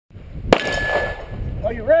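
A single sharp metallic clang about half a second in, followed by one clear ringing tone that fades out in under a second.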